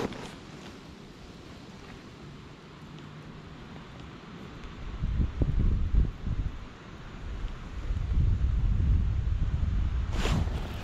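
Wind buffeting the microphone in gusts, a low rumble that is light at first and builds strongly about halfway through and again near the end.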